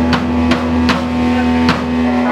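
Live rock band playing: bass and electric guitar hold one sustained low note while the drums strike a steady beat, about two and a half hits a second.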